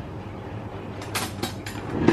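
Steady low background hum with a few light clicks and rustles about a second in, as of a knife being picked up and handled.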